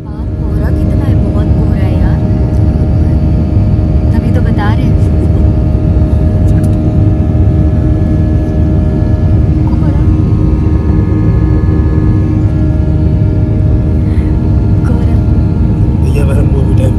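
Jet airliner cabin noise: a loud, steady roar of engines and airflow, with steady engine tones held over it.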